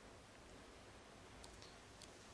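Near silence: room tone, with two faint clicks about a second and a half in.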